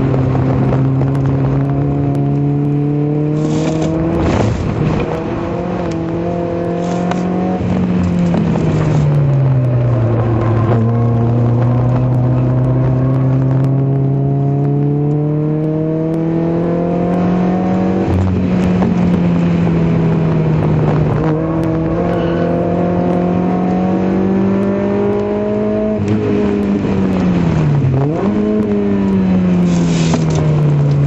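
Citroën Saxo VTS's four-cylinder engine at racing speed, heard from inside the car under hard acceleration. Its note climbs slowly, falls sharply about eight to ten seconds in, climbs again, then dips and recovers quickly near the end, as it changes speed and gear through the corners.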